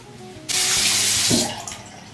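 Water running from a sink tap: a loud rush that starts abruptly about half a second in, runs for about a second, then dies down.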